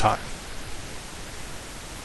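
A man's voice ends a word at the very start, then a steady, even hiss of background noise fills the rest.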